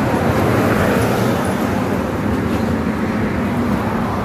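Steady hum of road traffic from a nearby highway.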